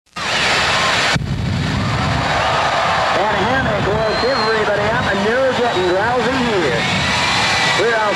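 Jet dragster engines running with afterburners lit: a loud, steady roar that starts abruptly and loses some of its hiss about a second in. A voice talks over it from about three seconds in.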